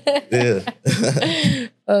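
People laughing, a few short bursts of voiced laughter broken by brief pauses, with a word of speech at the very end.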